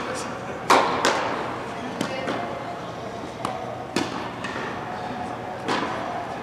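Tennis ball being hit back and forth with rackets and bouncing on an indoor court: a series of sharp pops, the loudest pair about a second in, then single hits every second or two.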